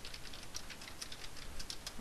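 Computer keyboard being typed on: a run of quick, irregular key clicks, fairly quiet.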